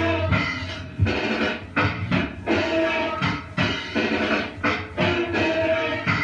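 Band jamming, with guitar chords played in a steady rhythm over bass. It is taped on a clock radio's built-in cassette recorder, so the sound is lo-fi and dull in the highs.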